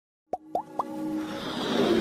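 Logo-intro sound effects: three quick rising pops about a quarter second apart, then a swelling sweep that grows louder toward the end.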